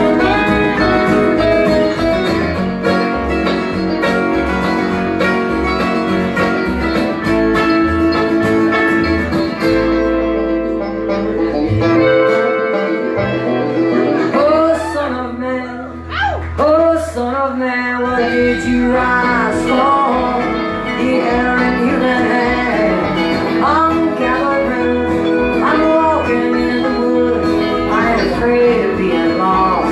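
Live band music with banjo, acoustic guitar and electric guitar and a lead vocal, in a country-folk style. From about ten seconds in, the low end drops away for several seconds before the full band comes back in.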